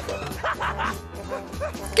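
About five short, high yipping dog barks in quick succession from the cartoon's soundtrack, over background music.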